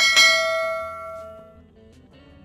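A single bell-chime 'ding' sound effect, struck once and ringing out over about a second and a half. It is the notification-bell chime of an animated subscribe-button overlay.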